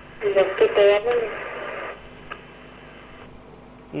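A caller's voice coming in over a telephone line, thin and cut off above the speech range, speaking briefly near the start, followed by about a second of line hiss that cuts off.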